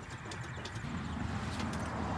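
Einbock cultivator row unit rocked side to side by hand, its linkage giving a few light metal clicks and knocks over steady wind noise on the microphone; the knocking comes from the side play in the unit's mounting.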